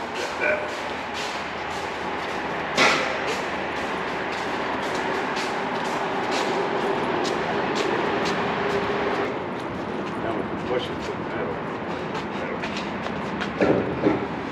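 A long welded steel-tube gate being carried and set down on a trailer: scattered light metal clicks and knocks from the tubing and footsteps, with a sharp knock about three seconds in, over a steady rushing handling noise.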